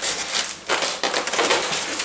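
Packaging being handled: a styrofoam insert rubs and scrapes as it is lifted out of a cardboard box, with plastic wrapping rustling, in an irregular run of crinkling and scraping.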